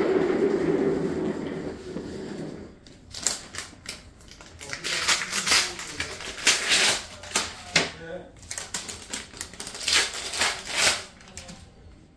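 Muffled rubbing of the recording phone against clothing, then a run of quick clicks and rustles, thickest about five to seven seconds in and again near ten to eleven seconds.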